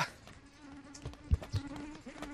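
Mosquitoes buzzing in a steady, intermittent hum around the walkers. Footsteps thud on concrete steps, with one heavier thud just past halfway.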